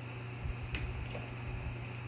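A few faint clicks and small handling noises as a USB cord is plugged into a small plastic personal air cooler, over a steady low hum.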